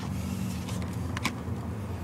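Steady low hum of a car idling, heard from inside the cabin, with a few light clicks from a plastic-bagged toy blister pack being handled.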